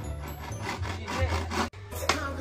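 Hand saw cutting through wood in quick back-and-forth strokes, over background music; the sound cuts off abruptly near the end.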